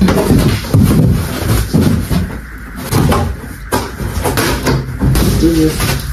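A short laugh, then a run of knocks, bumps and clatter from belongings being handled while packing up a room.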